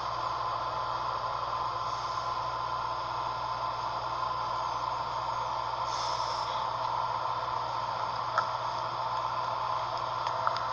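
Steady hiss with a low hum, the background noise of the recording during a silence on the phone call, with one faint click about eight seconds in.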